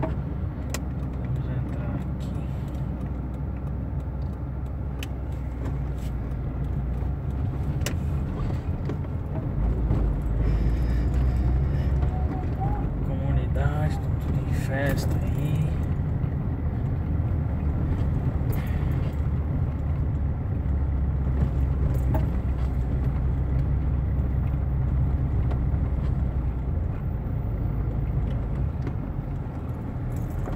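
Car cabin noise while driving: steady low engine and road rumble that grows louder about ten seconds in, with scattered small rattles and clicks from inside the car.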